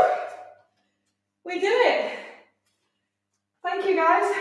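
A woman's voice in three short bursts of speech or exclamation, with near-silent gaps of about a second between them.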